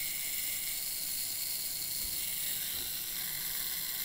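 The mechanical self-timer of a Yashica-Mat twin-lens reflex's Copal-MXV leaf shutter running down with a steady whirring buzz while the shutter waits to fire.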